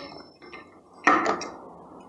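Steel screwdriver shafts scraping and clinking against a washing machine motor's housing and cooling fan as they are wedged in to pry the fan off the shaft: a small tick, then a louder short scrape about a second in that fades away.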